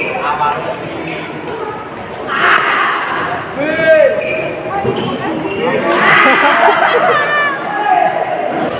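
A badminton rally: several sharp racket hits on the shuttlecock, about a second or so apart, over spectators' voices and shouts.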